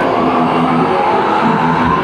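Live thrash metal band playing loud, the heavily distorted electric guitars holding a droning chord.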